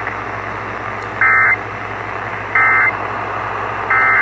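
An emergency radio tuned to an AM station sounds the Emergency Alert System end-of-message: three short, harsh, buzzy data bursts about a second and a third apart, over steady radio hiss. These bursts signal that the alert broadcast has ended.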